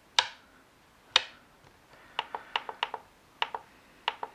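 Clicks from operating the controls of a Flysky FS-ST16 RC radio transmitter: two sharper clicks in the first second or so, then a quick run of about seven lighter clicks in the second half.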